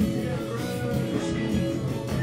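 Live rock band playing an instrumental passage, electric guitars to the fore, with no vocals.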